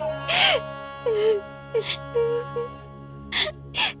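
Soft background music holding long steady notes, under a girl crying: several sharp gasping breaths and short sobbing sounds.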